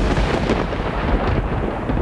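Thunder sound effect in a TV drama soundtrack: a loud, rolling low rumble with a noisy crackle on top that slowly thins out.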